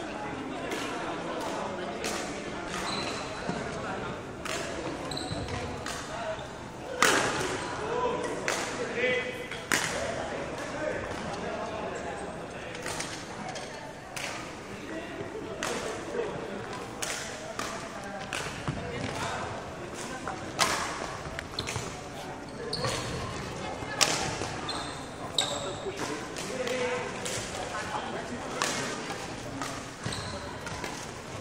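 Badminton rackets striking shuttlecocks again and again, sharp hits at irregular intervals with the loudest about seven seconds in, along with short squeaks from shoes on the wooden court floor.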